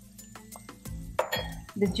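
Spatula clinking and scraping against a small glass bowl in a run of light clicks, with a louder clink a little past halfway, as minced garlic is knocked into a pot of frying onions, over a faint sizzle.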